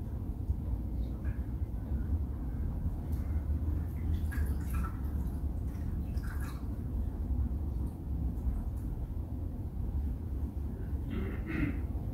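Steady low hum with faint, scattered small clicks and rustles of handling.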